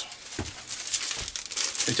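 Clear plastic centre-fold film crinkling and rustling as a roll of it is handled and a length is pulled loose, with a few sharper crackles.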